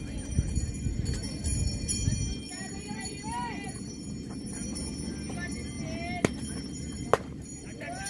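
Two sharp smacks a little under a second apart near the end; the second is a softball pitch popping into the catcher's mitt for a called strike. Faint voices from the field and stands run underneath.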